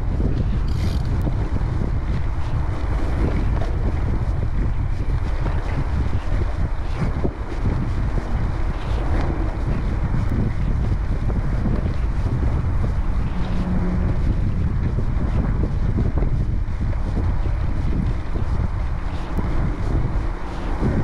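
Steady wind rumble on the microphone of a camera on a moving bicycle at about 19 km/h, over the rolling of a Cannondale Topstone gravel bike's tyres on a dirt forest trail, with scattered light ticks and rattles from the bike.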